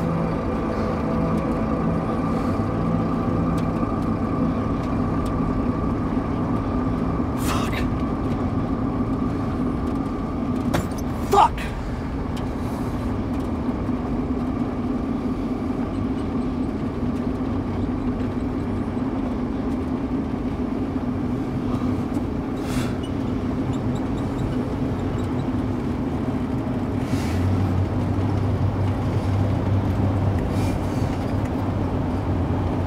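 Vehicle engine and road noise heard from inside the cab while driving: a steady low drone, with a few short clicks along the way.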